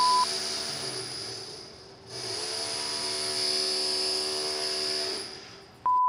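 A drill running with a steady, high machine whine. It eases off about two seconds in, runs again, then fades out near the end. A short high beep sounds at the very start and another just before the end.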